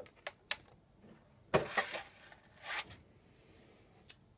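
Scattered light clicks and a soft rustle as a plastic cutting mat is handled and lifted out from the Cricut Expression cutting machine after it has unloaded.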